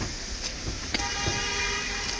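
A vehicle horn starts about a second in and holds one steady note, over a constant low rumble of street traffic.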